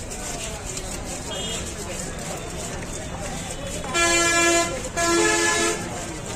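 A vehicle horn sounds two honks in a row, each just under a second long, starting about four seconds in.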